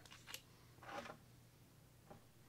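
Faint handling sounds: a light click, then a brief scrape as the cap is twisted off a small plastic oil bottle, over a faint steady hum.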